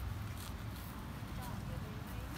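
Faint, indistinct voices of people talking at a distance over a steady low rumble, with a few faint short chirps and clicks.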